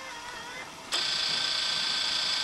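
Camcorder tape transport whirring with a steady high-pitched whine as the tape rewinds, starting suddenly about a second in.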